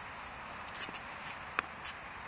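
Shoes scraping and sliding on a concrete shot put circle during a glide and throw: several short scuffs and one sharp tap about one and a half seconds in, over a steady hiss.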